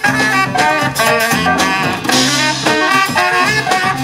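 Live jazz-funk band playing: saxophone melody over drum kit, electric bass and keyboard, with a cymbal crash about halfway through.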